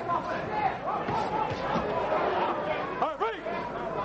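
Indistinct voices talking over arena crowd chatter, with a brief louder call that rises and falls a little after three seconds in.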